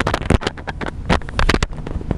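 Microphone handling noise from a clip-on recording mic being fiddled with: a rapid, irregular run of knocks and rustles over a low rumble.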